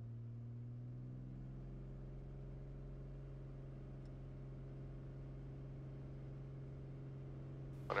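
Faint, steady drone of the Beechcraft A36 Bonanza's six-cylinder piston engine running on the ground, its pitch rising slightly about a second in and then holding.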